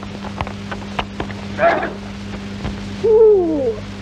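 A few scattered clicks and a short voice-like sound, then near the end a loud, long hoot that falls in pitch, over the steady low hum of an old film soundtrack.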